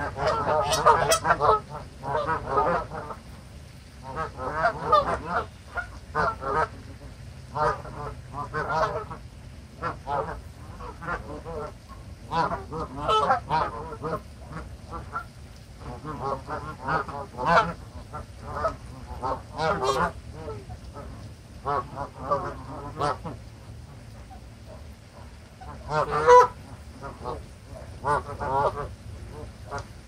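A flock of Canada geese honking, many short calls coming in quick clusters with brief lulls between them.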